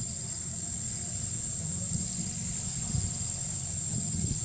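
Steady, high-pitched drone of insects in the forest, with a fainter pulsing note beneath it, over a continuous low rumble.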